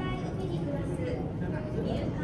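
Indistinct background chatter of several people over a steady low hum.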